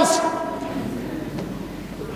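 The preacher's amplified voice ringing on in the hall after a shouted word: a steady multi-note tone that fades away over about a second and a half, leaving low room noise.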